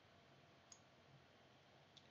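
Near silence: room tone, with one faint click about a third of the way in.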